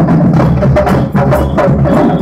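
Street drum band playing loudly: deep bass drums booming under sharp, fast stick strokes in a quick, driving rhythm.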